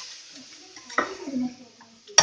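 A spoon stirring a thick masala in a kadai, scraping against the pan, with a sharp knock of the spoon on the pan about a second in.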